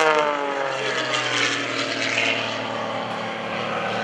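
A 350-horsepower MX-2 aerobatic monoplane's engine and MT propeller running in flight overhead. The pitch falls over about the first second, then holds steady.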